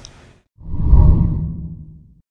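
A deep whoosh transition sound effect that swells up about half a second in, peaks around one second, then fades away.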